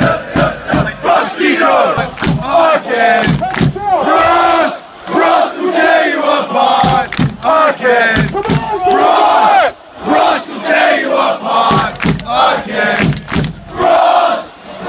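A football supporters' end chanting loudly in unison, close to the microphone, with sharp beats in time with the chant.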